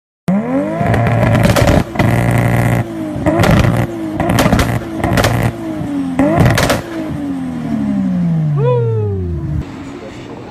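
Nissan Skyline GT-R's twin-turbo straight-six being revved hard in a series of blips, its pitch rising and falling, with loud sharp cracks from the exhaust during several of the revs. In the second half one long rev falls away slowly.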